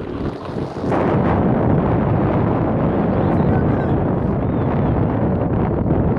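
Wind buffeting the phone's microphone: a loud, deep noise that comes up about a second in and holds steady.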